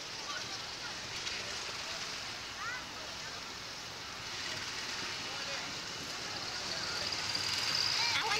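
Air rushing over the microphone of a camera riding on a swinging Slingshot reverse-bungee capsule: a steady hiss of wind noise, with faint voices under it.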